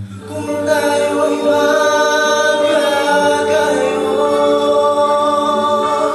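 A mixed-voice vocal ensemble singing in sustained close harmony. The voices come in together right at the start and swell over the first second or so.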